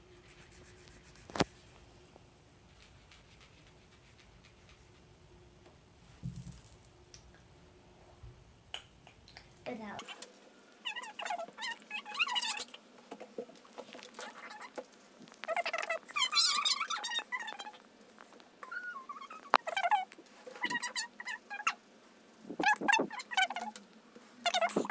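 Children's voices in short, very high-pitched squeaky bursts, starting about ten seconds in. Before that there is quiet room tone with one sharp click.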